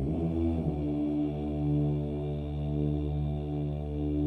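Background music: slow, sustained low chords with a drone- or chant-like character, the harmony shifting once about half a second in and then held.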